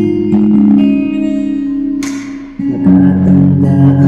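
Guitar music: a plucked guitar passage that dips briefly just past the middle, then comes back louder with strummed chords.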